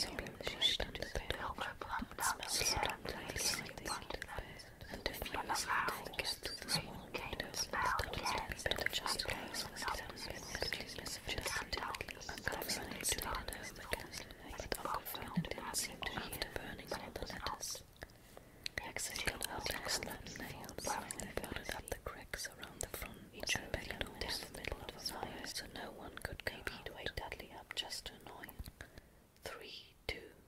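Whispered speech: a person reading a story aloud in a whisper.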